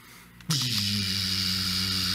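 A steady electrical hum with a hiss over it, starting suddenly about half a second in.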